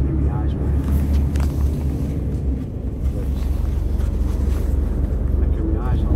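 A heavy lorry's diesel engine runs on the road, heard inside the cab as a deep steady rumble that dips briefly a little past halfway.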